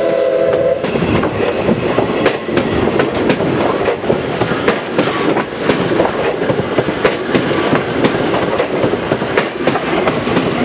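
A steam locomotive's whistle, several tones sounding together, cuts off under a second in. Then the wheels of passing passenger coaches clatter over the rail joints in a fast, uneven run of clicks and knocks over a steady rumble.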